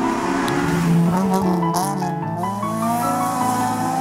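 Honda Civic rally car's VTEC four-cylinder engine revving hard, its pitch falling and rising through gear changes, with a short burst of tyre noise near the middle, heard over background music.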